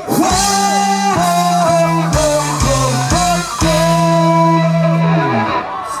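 Live rock band playing: electric guitar, bass and a Sonor drum kit hit a run of short stop-start chord stabs together, then a long held chord that dies away about five seconds in.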